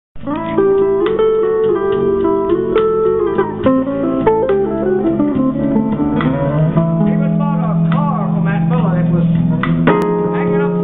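Archtop guitar played solo through a small amplifier: a steady run of plucked chords and single notes, with low notes held for a couple of seconds near the end.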